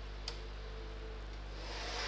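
A stylus on a pen tablet: one short tap about a quarter second in, then a soft scratchy hiss that rises near the end as the stylus draws a highlighter stroke. A steady electrical hum runs underneath.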